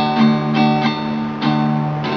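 Acoustic guitar being strummed, a few chord strokes with the chords ringing on between them.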